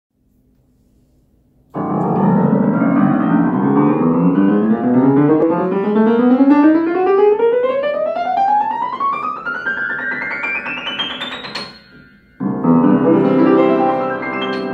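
Wurlitzer upright piano played in one long ascending run, note by note, from the bass steadily up to the top of the keyboard over about ten seconds, each note ringing on under the next. After a short break, a loud full chord is struck near the end.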